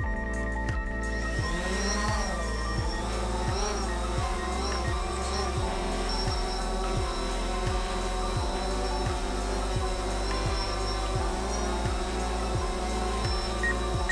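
Quadcopter drone's rotors whining as it spins up, lifts off and hovers, the pitch wavering as it holds its height under a hanging basket on a rope. Background music with a steady beat runs alongside.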